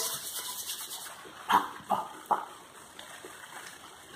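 Hands rubbing aftershave splash between the palms, then patting it onto the face: a brief rustle at first, then three short soft pats about half a second apart in the middle.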